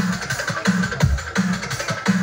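Drum and bass music played loud through stacks of sound-system speakers. Deep kick drums land about every 0.7 seconds, with a held bass note between them and busy percussion on top.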